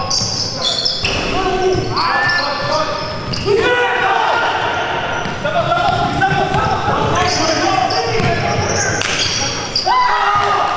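Basketball bouncing on a hardwood gym floor, with a person's voice running over it throughout.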